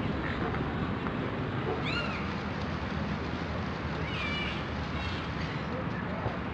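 Two short, high-pitched animal calls, one arching up and down about two seconds in, a second wavering one about four seconds in, over a steady background rumble.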